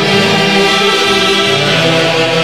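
An Andean orquesta típica playing a tunantada: a saxophone section sounding held, blended notes over an Andean harp, loud and continuous.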